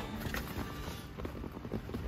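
Faint handling noise of hands gripping and tugging at a plastic lower dash trim panel, with a few small clicks and rustles.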